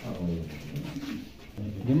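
Men's low voices murmuring and talking in a crowded small room, with a louder voice rising near the end.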